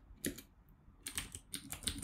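Computer keyboard typing: a keystroke shortly after the start, then a quick run of about half a dozen keystrokes in the second second.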